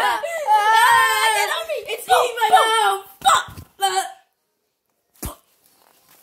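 A child's high-pitched voice wailing without words, its pitch sliding up and down for about three seconds, then a few short cries that cut off suddenly. After about a second of silence there is a single short knock.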